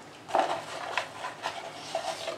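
Hand rummaging in a cardboard box of paper message slips: several short rustles and clicks as the slips are stirred and one is picked out.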